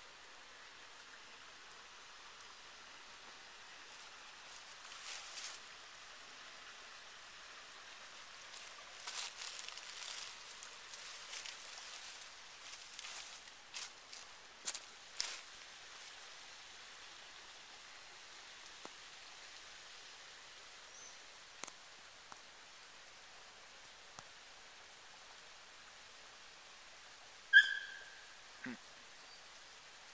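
Footsteps through dry leaf litter, heard as scattered crunches and rustles over a faint steady hiss, mostly in the first half. Near the end a short, sharp high chirp is the loudest sound, followed by a brief falling sound.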